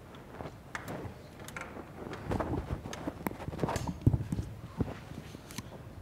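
Irregular clicks and knocks of handling at a lectern, with footsteps on the stage. The knocks are sparse at first and come thicker and louder from about two seconds in.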